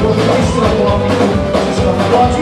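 Live samba-reggae band playing a steady groove on electric bass, guitar, drum kit and hand drums.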